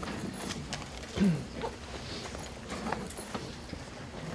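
Quiet room sound with scattered light clicks and knocks, and a short murmur of a voice about a second in.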